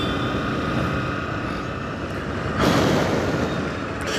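Steady drone of a vehicle riding along a road, with road and wind noise. A louder rush of noise rises and falls about two and a half seconds in, lasting under a second.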